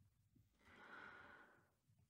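Near silence, with a woman narrator's faint, soft intake of breath about a second in, just before she goes on reading.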